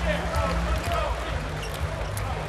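Indoor volleyball rally: sharp smacks of hands on the ball as it is set and then hit, over the steady din of an arena crowd and voices.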